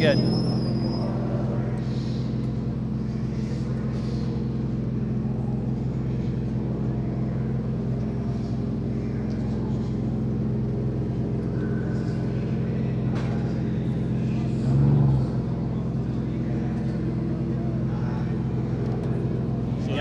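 A steady low mechanical hum made of several fixed tones, with a brief louder low swell about three-quarters of the way through.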